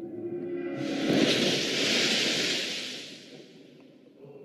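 A rushing whoosh swells up about a second in, peaks, and fades away over the next two seconds, over a low, sustained musical drone.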